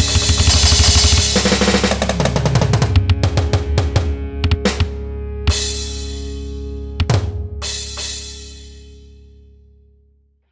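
Final bars of a rock song with drums tapped on a phone drum app over it: a fast run of drum hits and fills, then a few last crash-cymbal accents about four and a half, five and a half and seven seconds in. The final chord and cymbals ring on and fade out to nothing.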